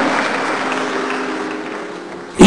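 A pause in amplified preaching. The noise of a large, crowded hall fades steadily, with a few faint held musical notes underneath in the second half.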